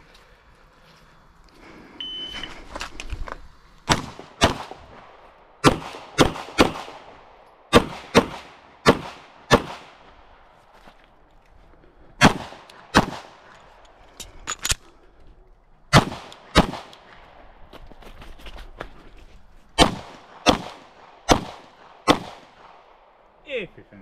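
A shot timer beeps once, and about two seconds later a pistol starts firing: about twenty shots, mostly in quick pairs, in several strings separated by short pauses, each shot sharp and echoing.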